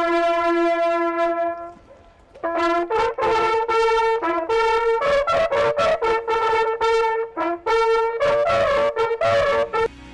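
An ensemble of small brass hunting horns playing a fanfare together. A long held note breaks off for about half a second about two seconds in, then the horns go on in a run of short notes that step between two pitches.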